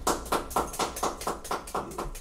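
Hand-clapping after an acoustic song ends: a steady run of sharp claps, about five a second.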